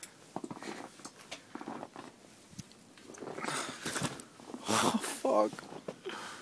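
Footsteps in fresh snow: a few faint crunches, then louder noisy bursts of breath or voice and a short exclamation near the end.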